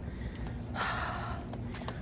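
A woman breathing hard, winded after sprinting, with one heavy breath about a second in over a low rumble.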